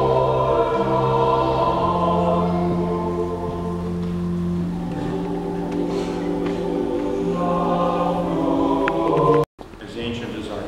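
Choir singing long held chords with steady low notes beneath, heard in a reverberant church. The music cuts off abruptly shortly before the end.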